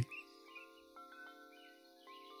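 Faint ambient background music: a sustained low drone under soft, chime-like held notes that shift pitch a few times, with faint bird chirps mixed in.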